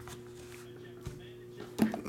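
Faint steady hum, with a light tap about a second in and a short, louder knock near the end as trading cards and a sealed card box are handled on a table.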